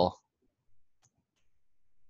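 A few faint computer mouse clicks in near silence, following the last spoken word.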